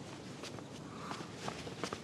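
Quiet footsteps: a few soft, irregular steps.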